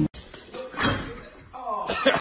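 A single bang a little under a second in, with a short ringing tail, then a person's voice rises in an exclamation near the end.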